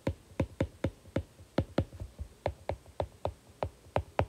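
Stylus tip tapping on a tablet's glass screen while handwriting, a quick irregular run of sharp ticks, about five a second.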